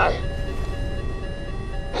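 Film-score music with long held notes over a low, steady rumble from the fighter jet's cockpit.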